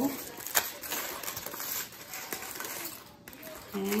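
Aluminium foil crinkling and rustling as it is pulled open from around a grilled potato by hand, with sharp crackles, the loudest about half a second in, then quieter near the end.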